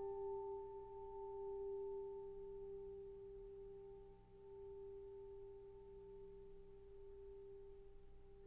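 A piano note left to ring: a single held tone that fades slowly, its upper overtones dying away sooner than the fundamental.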